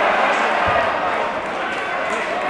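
Many overlapping shouting voices of footballers and spectators reacting, with one dull thud about two-thirds of a second in.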